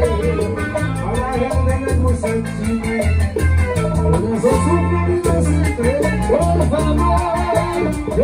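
Live band playing Latin dance music: a pulsing electric bass, keyboard, congas and guitars, with a rapid steady percussion ticking on top and a male lead singer's voice over it.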